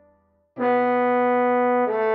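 Trombone melody: a rest of about half a second, then a long note held steadily, moving to the next note just before the end.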